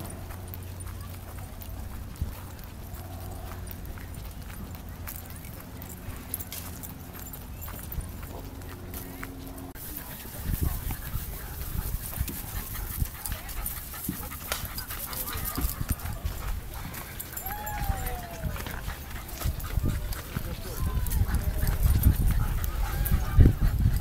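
Footsteps and hand-held camera rustle of someone walking leashed dogs over grass, in irregular low thumps that grow louder in the second half. A steady low hum runs through the first ten seconds.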